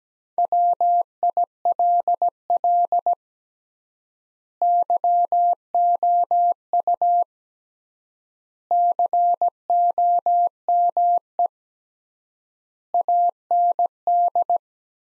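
Morse code sent as a single-pitch keyed beeping tone at 17 words per minute, in four word-groups of dots and dashes separated by long pauses of extra-wide word spacing. It is the first sending of the next practice sentence, "Will you come and see her?"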